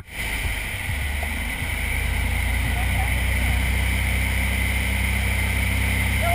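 Steady engine and propeller drone of a small single-engine jump plane, heard from inside the cabin in flight. A sharp click and brief dropout come right at the start.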